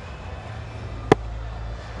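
A single sharp crack of a cricket bat striking the ball, about a second in, over a steady low stadium rumble.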